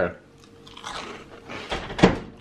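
A man chewing a mouthful of dry Cap'n Crunch Christmas Crunch cereal, crunching, with louder crunches near the end.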